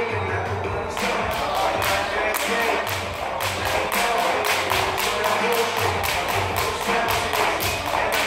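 Background music with a beat. From about a second in, a fast run of sharp taps and thuds: a jump rope slapping the plywood floor and feet landing during double unders.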